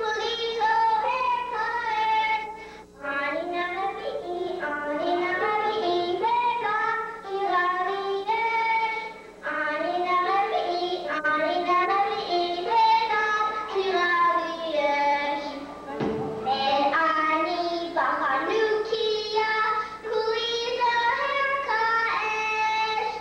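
A group of children singing a song together into stage microphones, their sung melody running on with only brief breaths between phrases.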